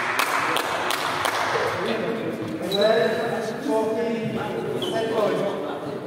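Men's voices talking in a large, echoing sports hall, with a few sharp knocks in the first second or so and two brief high-pitched squeaks, one about halfway through and one near the end.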